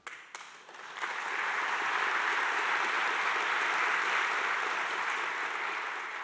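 Audience applauding: a few scattered claps at first, filling out into steady applause about a second in and easing off near the end.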